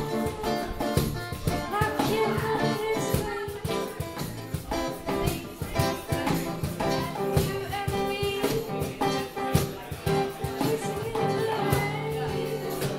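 A woman singing live to a strummed acoustic guitar.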